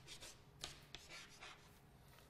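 Chalk writing on a chalkboard: a few faint, short strokes and taps.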